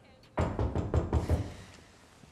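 A rapid run of about six loud knocks pounding on a door, lasting a little over a second.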